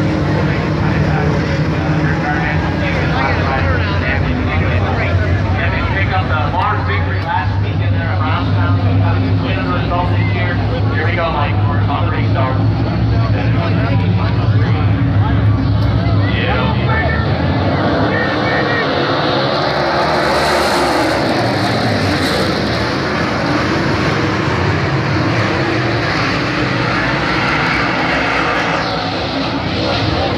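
Dirt late model race cars running at speed on a dirt oval, their V8 engines rising and falling in pitch. The sound becomes a broader, louder rush around twenty seconds in, as the field comes by close.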